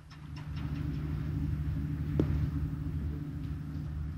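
Steady low engine-like hum. It fades in at the start and holds level, with one brief sharp tick about halfway through.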